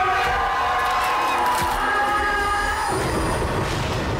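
Horror film trailer soundtrack: several high-pitched screams held and overlapping for about three seconds, then cutting off.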